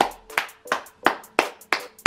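Hand claps in a steady rhythm, about three a second, with a deep bass note sounding under them at the start and again at the very end, like a clap beat in music.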